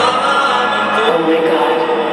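Choir-like voices singing long, drawn-out notes over the concert sound system, with a new lower note entering about a second in.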